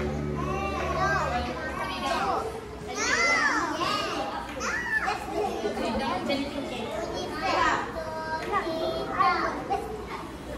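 Young children chattering and calling out, many high voices overlapping. Background music stops about a second and a half in.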